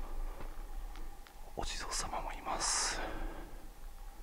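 A man whispering a few words under his breath, mostly between about one and a half and three seconds in, with a few faint ticks before it.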